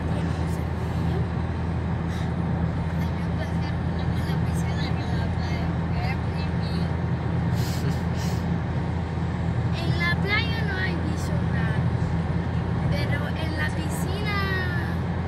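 Steady road and engine noise inside a moving car's cabin, a loud even drone with a low hum underneath.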